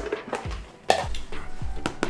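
A plastic lid lifted off a plastic bowl and set down on a granite counter: a sharp clack about a second in and a lighter one near the end, over background music with a steady low beat.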